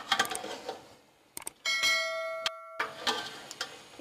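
A subscribe-button sound effect: a couple of sharp clicks, then a bright bell chime that rings for about a second and cuts off abruptly, about halfway in. Around it, a spoon scraping and stirring meat and masala in a metal pot.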